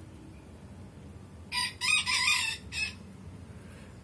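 A rooster crowing once, a harsh call of about a second and a half, starting about a second and a half in.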